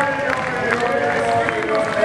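Skateboard on a contest course: the board grinds off a ledge and rolls on, with several sharp clacks, over a steady background of voices.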